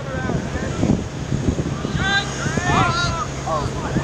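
Wind rumbling on the microphone, with several people shouting across an open field about halfway through.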